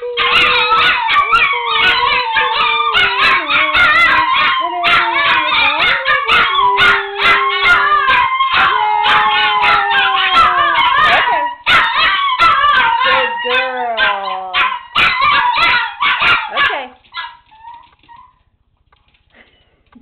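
Two chihuahuas howling together in high, wavering, overlapping cries broken by short yips. The howling stops about seventeen seconds in, and it is nearly quiet after that.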